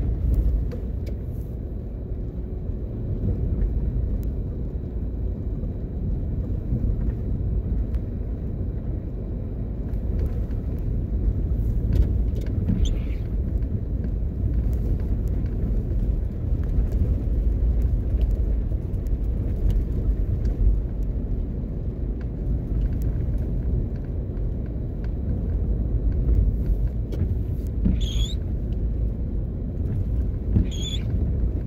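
Steady low rumble of a car's engine and tyres on the road, heard from inside the cabin while driving slowly. A few short high chirps cut through about halfway in and again near the end.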